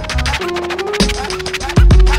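Instrumental hip hop beat with turntable scratching between rap verses: drums and a held note, with a heavy kick drum coming in near the end.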